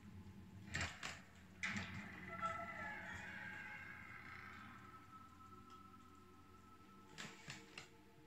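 Faint film soundtrack: two knocks, then a sustained tone that slowly falls in pitch and fades over several seconds, with a few clicks near the end.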